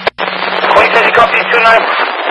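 FDNY fire radio dispatch talk heard through a scanner: continuous speech in the narrow, tinny sound of a radio channel, over a steady low hum. The transmission cuts out briefly just after the start.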